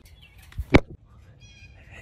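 A single sharp knock or slam about three-quarters of a second in, followed by faint high-pitched tones near the end.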